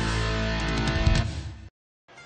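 Short guitar-driven music jingle of a TV graphic ident, cutting off abruptly just before the end into a moment of silence.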